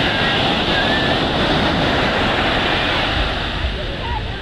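Small surf waves breaking and washing up a sandy beach: a steady rushing wash that eases slightly near the end.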